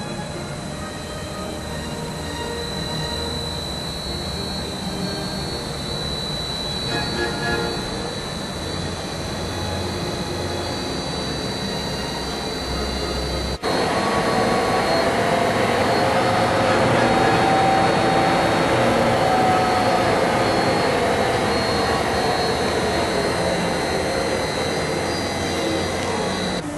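Acer Dynamic series oil country lathe running with its spindle under power, a steady mechanical run with a thin high whine from the headstock. In the second half the pitch slowly shifts as the spindle speed is turned down with the potentiometer, from about 550 to 450 RPM.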